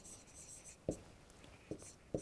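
Chalk writing on a chalkboard: faint scratching strokes, with a light tap about a second in.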